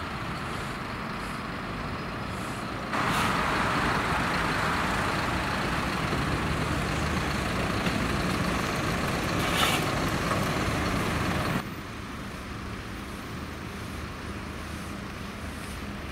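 Vehicle engines running with road traffic noise: a steady low engine rumble throughout, with a louder, hissier stretch from about three seconds in until near twelve seconds.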